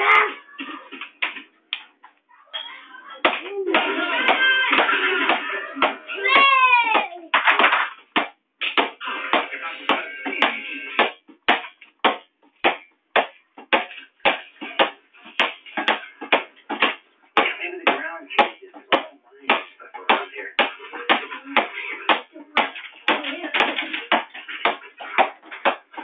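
A ball being bounced repeatedly on a hard floor by a child, in a steady run of bounces from about eight seconds on. Children's voices and a high squeal come before the bouncing settles in.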